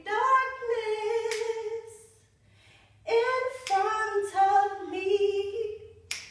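A woman singing a cappella: two long, sustained sung phrases with a short pause of about a second between them.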